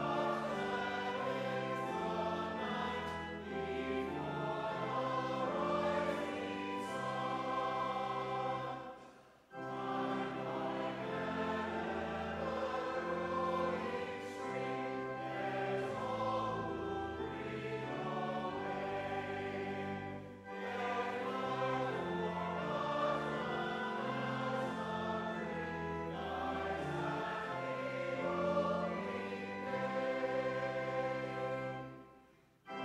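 Church choir singing in several parts, with sustained chords. The singing breaks off briefly about nine seconds in and dips again around twenty seconds, between phrases.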